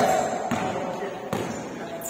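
Basketball dribbled on a hardwood court floor: two sharp bounces a little under a second apart, with players' voices.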